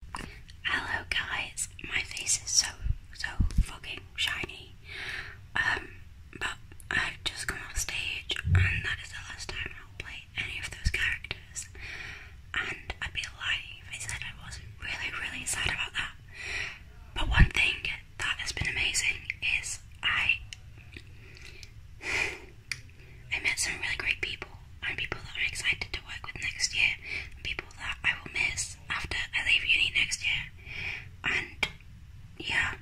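A woman whispering at length, in short unvoiced phrases. A few soft thumps fall among the whispers, the loudest about seventeen seconds in.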